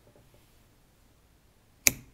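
Fabric shears closing once on a yarn tail near the end: a single sharp snip.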